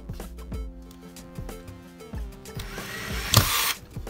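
Background music with a steady beat. Over it, a Makita cordless drill driver runs in one short burst, driving a screw into the plywood, beginning about two and a half seconds in and loudest shortly before the end.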